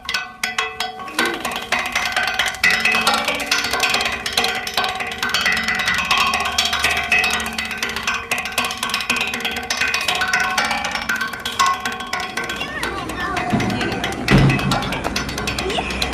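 Soundtrack of a played-back video excerpt: music with rapid clicking percussion, mixed with voices, and a deep thump about two seconds before the end.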